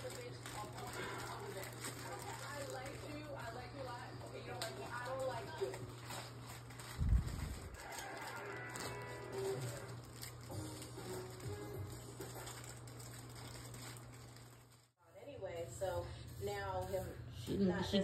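Television audio playing in a room: faint speech and music over a steady low hum, with a single low thump about seven seconds in and a brief dropout near the end.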